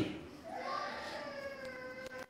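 A faint, high-pitched, drawn-out cry in the background. It starts about half a second in, rises slightly, then holds for about a second and a half.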